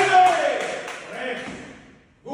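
Voices calling out in a large room, with a sharp click right at the start. The voices fade away to near silence by the end.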